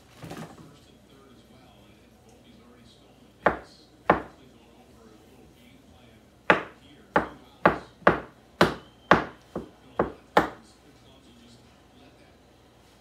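Kitchen knife slicing mushrooms on a cutting board, each cut ending in a sharp knock of the blade on the board: two cuts, a pause, then a quick run of nine at about two a second.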